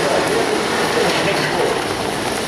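A race commentator's voice, faint under a loud, steady wash of background noise.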